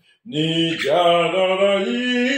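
A man singing unaccompanied in a slow melody: after a short breath at the start, he holds long sustained notes that step up in pitch near the end.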